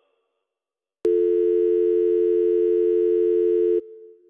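Telephone dial tone: one steady, unbroken hum starting about a second in and cutting off sharply near the end, with a brief fading echo.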